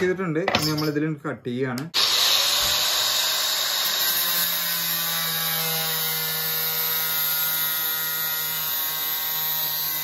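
Handheld angle grinder with a cutting disc slicing through thin steel sheet: it starts abruptly about two seconds in and runs as a steady, loud whine over a harsh grinding hiss, stopping right at the end.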